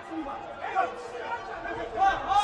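Men shouting from ringside over the chatter of a large indoor hall, the shouting growing louder near the end.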